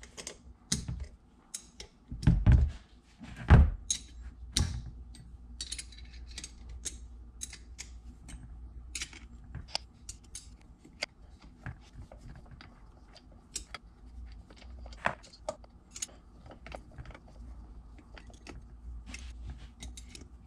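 Wrench loosening and backing out the flange bolts on an aluminium Roots supercharger (AISIN AMR300): irregular metal clicks and clinks, with two heavier knocks about two and a half and three and a half seconds in.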